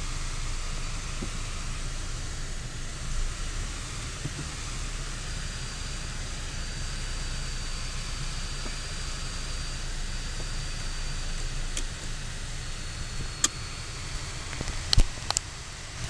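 Steady in-cabin noise of a 2014 Ford Focus SE sedan under way: a low road and engine rumble under an even hiss, with a faint thin high whine through the middle. A few sharp clicks come near the end.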